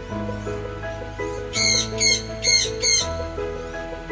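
Yellow-crested cockatoo giving four short, harsh calls in quick succession from about a second and a half in, over background music with sustained tones.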